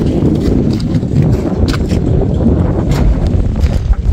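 Wind buffeting the microphone as a steady low rumble, with a few faint knocks.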